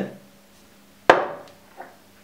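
A single sharp knock of a cup against a hard kitchen surface about a second in, dying away within half a second, followed by a faint light tap.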